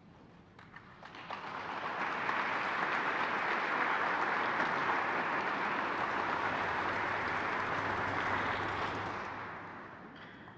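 Audience applauding: scattered claps about a second in build quickly into full applause, which holds steady and then fades away near the end.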